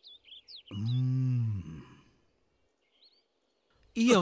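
A man's voice makes one drawn-out vowel sound about a second in, its pitch rising and then falling, with no words. Faint small-bird chirps come at the start and again near the end.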